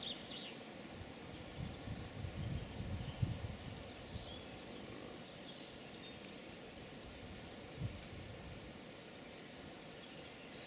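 Quiet outdoor ambience with faint, short high chirps of small birds scattered through the first half. A few low rumbles hit the microphone a couple of seconds in and once near the eight-second mark.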